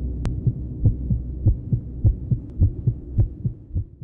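Low, steady droning intro soundscape with soft low thumps about three a second and a single sharp click shortly after the start, fading out near the end.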